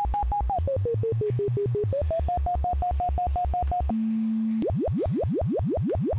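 VCV Rack software modular synthesizer oscillator under frequency modulation, pulsing about seven times a second. Its pitch slides down and back up, holds a steady low tone briefly, then turns into rapid repeating upward pitch sweeps.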